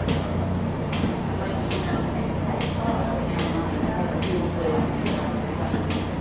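Footsteps scuffing at a slow walking pace, about one step a second, over indistinct background voices and a steady low hum.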